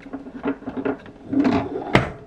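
Hard plastic toy parts clicking and rattling as a plastic roof rack is handled and pressed on a toy camper van's roof, with a louder run in the second half and a sharp click near the end.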